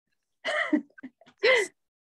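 Two brief non-word sounds from a person's voice, about a second apart.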